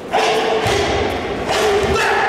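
A karateka's feet thudding twice onto the foam competition mat as he steps into a wide stance during a kata, with a loud voice calling out over it.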